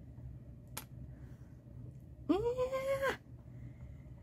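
A single sharp click as a small wooden game piece is set down on a wooden tic-tac-toe board, followed by a woman's long drawn-out "yeah", over a low steady room hum.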